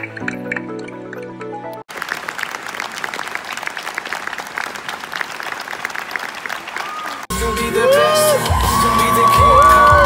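Soft pitched music, then a hard cut about two seconds in to an audience applauding steadily. A second hard cut a little past seven seconds brings in louder music mixed with cheering and whooping voices.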